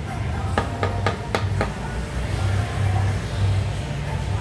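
A quick run of five sharp knocks, about four a second, over a steady low rumble.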